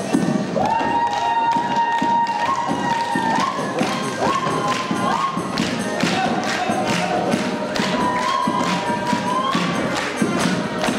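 Lively Ukrainian folk dance music with a strong, steady beat of about two sharp strikes a second and a long held melody line that steps upward several times.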